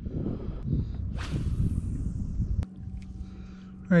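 Wind buffeting the microphone as a low rumble, with a brief whoosh a little over a second in and a sharp click about two-thirds of the way through, after which the rumble drops and only a faint steady hum remains.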